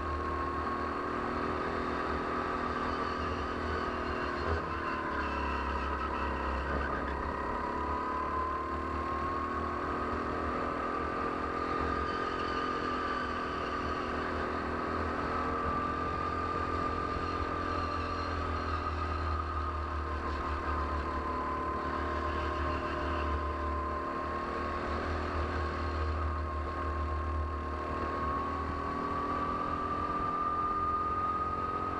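Rental go-kart engine running at racing speed, heard from a camera mounted on the kart, with its pitch dipping and climbing several times through corners and straights.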